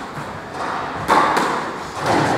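A single sharp thud about a second in, on a squash court between rallies, with a weaker knock at the very start.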